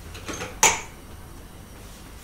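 A single sharp clack, like a kitchen item or cupboard being knocked while things are handled, about two-thirds of a second in, with a few faint ticks just before it.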